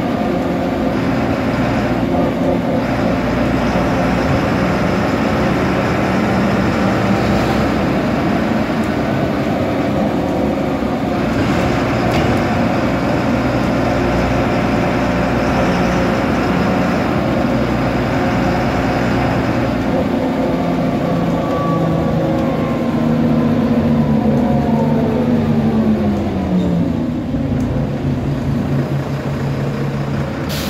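Interior of an Ikarus 412.30A low-floor city bus under way: the diesel engine runs steadily while driving, and about three-quarters of the way through its note falls smoothly and settles lower as the bus slows.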